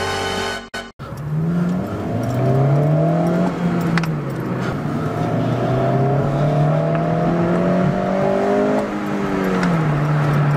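2008 Honda Civic Si's 2.0-litre four-cylinder engine heard from the cabin as the car accelerates through the gears. The revs climb, fall at a shift about four seconds in, climb again, and drop only slowly at the next shift near the end. This slow fall is the Civic Si's rev hang, which makes the shifts feel delayed.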